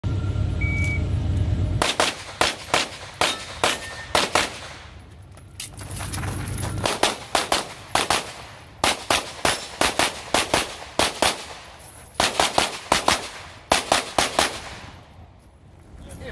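Handgun fired rapidly in strings of quick pairs of shots, with brief pauses between strings. The shooting starts about two seconds in and stops about fifteen seconds in.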